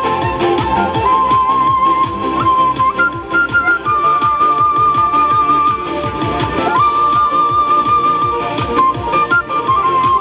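Wooden end-blown flute playing long held notes with vibrato, stepping up in pitch partway through and sliding up to a higher note later, over a backing track with a steady beat.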